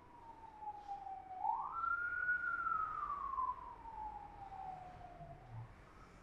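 An emergency-vehicle siren wailing as a single tone: it falls, sweeps quickly back up about a second and a half in, then slowly falls again, loudest in the middle and fading near the end.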